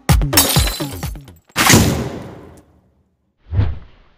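Intro music with deep, pitch-dropping drum hits cuts off about a second in. A loud crash sound effect follows and dies away over about a second, then a short, softer hit comes near the end.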